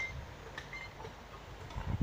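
Quiet outdoor background. The last of a high, bell-like ring dies away at the very start, and a soft low thump comes near the end.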